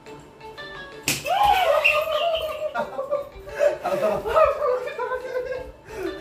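A single sharp smack about a second in, a stick striking a man in slapstick, followed by a long wavering cry and laughter.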